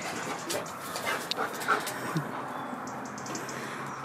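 German Shepherd dog panting, with a few light clicks and knocks.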